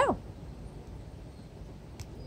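Faint, steady outdoor background noise with no distinct event, after the tail of a woman's spoken word at the very start.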